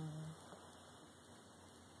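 The tail of a short, low 'mm'-like vocal sound falling in pitch, fading a third of a second in, then a small click. After that, faint room tone and near silence.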